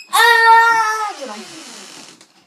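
A child's drawn-out vocal sound: one long note held steady for about a second, then sliding down in pitch and fading.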